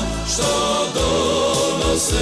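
A Croatian pop-folk song: male voices singing together over an instrumental backing.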